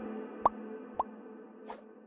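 Cartoon-style pop sound effects of an animated like/subscribe end screen: three short plops with a quick upward blip, at the start, about half a second in and about a second in, then a soft whoosh near the end. Beneath them a sustained ambient drone of steady tones fades away.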